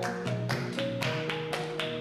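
Gamelan ensemble playing: bronze kettle gongs and keyed metallophones struck in an even pulse of about four strokes a second, their ringing tones overlapping.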